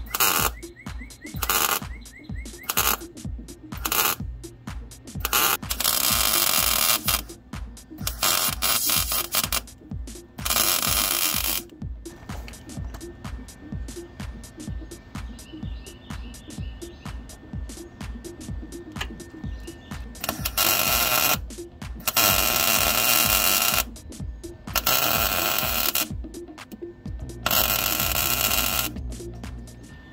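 Lincoln MIG welder building up weld on a broken steel bolt stud in repeated bursts of crackling, each a second or two long, over background music with a steady beat.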